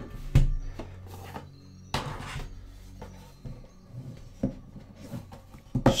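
Box set packaging being handled on a wooden desk: a few light knocks and a short scrape of cardboard and plastic Blu-ray cases, the loudest about two seconds in.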